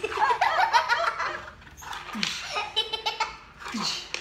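People laughing heartily. A long stretch of laughter fills the first second and a half, then more laughter follows after a short pause.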